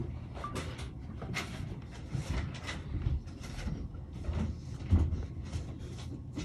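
Light, irregular scratching and clicking close up as a rhinoceros beetle clambers over a plastic jelly cup and wood-shaving substrate while it feeds.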